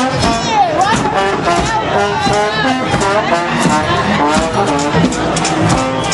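Live music played in a crowded street, with many people talking over it.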